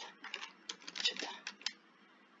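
Computer keyboard keys tapped in a quick, uneven run of about ten clicks, stopping near the end: backspacing over a mistyped cell reference in a spreadsheet formula.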